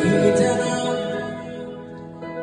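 Live pop music from a band on a concert stage, with a male singer's voice through the hall's sound system; the music gets quieter toward the end.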